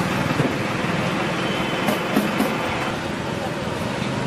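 Street traffic ambience: a vehicle engine running steadily, with people's voices in the background and a few brief ticks about halfway through.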